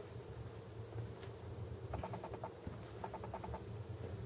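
Faint chirping trills, two short bursts of rapid pulses in the second half, from a small animal, over a low steady hum, with a light click about a second in.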